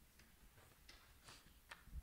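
Near silence in a quiet room, broken by a few faint clicks and a soft low bump near the end: microphone handling noise as a microphone is picked up at a stand.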